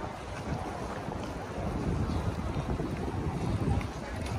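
Wind buffeting the microphone of a walking camera, an uneven low rumble that grows stronger in the second half, over faint open-air street ambience.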